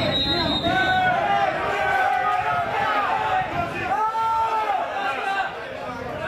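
Several voices shouting at a football match, with a few long drawn-out calls.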